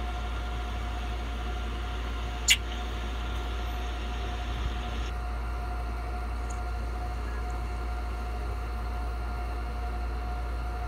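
Steady electrical hum and hiss with a faint steady tone above it, and one short, sharp high-pitched chirp about two and a half seconds in. The upper hiss drops away about five seconds in.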